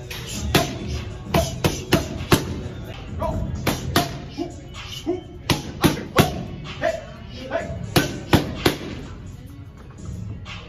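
Boxing gloves smacking into focus mitts in quick combinations, about fifteen sharp hits in bursts of two to four with short gaps between. Music plays underneath.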